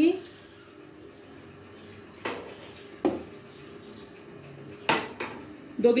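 Kitchenware clinking against a metal pressure cooker: three short, sharp knocks, the first two close together and the third about two seconds later.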